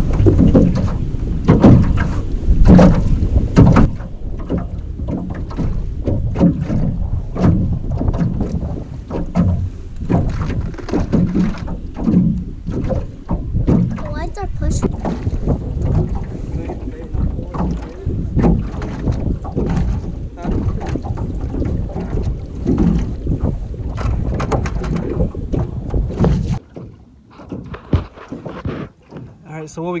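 Wind rumbling on the camera microphone over waves slapping against the hull of a small flat-bottomed boat, with scattered sharp knocks. The rumble stops suddenly near the end.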